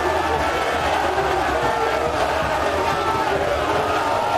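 A large crowd cheering, shouting and chanting, many voices at once and without a break.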